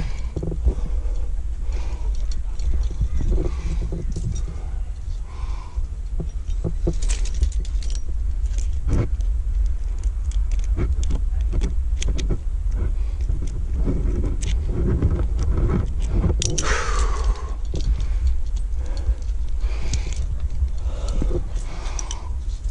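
Metal climbing gear (carabiners and quickdraws on a harness) clinking and jangling in irregular clicks as the climber moves and clips, over a steady low rumble. A brief falling swish comes a little after the middle.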